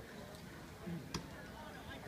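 Faint background voices over low ambient noise, with one sharp click a little over a second in.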